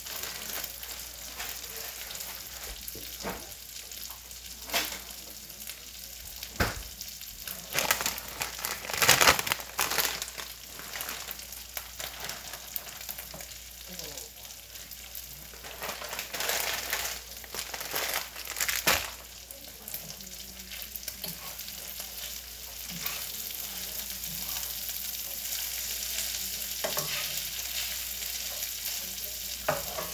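Ground meat and shredded cabbage sizzling steadily in a frying pan on a gas stove. Louder bursts of package rustling come in about a third of the way through and again a little past halfway, as food bags are handled beside the pan.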